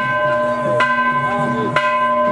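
Large hanging brass temple bell rung repeatedly by hand, about one strike a second, each clang ringing on into the next.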